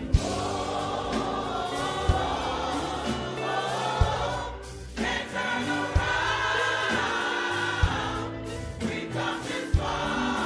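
Gospel church choir singing a slow invitation song, with low thumps about every two seconds under the voices. The singing breaks briefly about halfway, then carries on.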